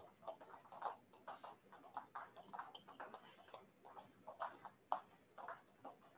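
Jump ropes slapping a foam mat as several people skip rope: faint, irregular taps, several a second.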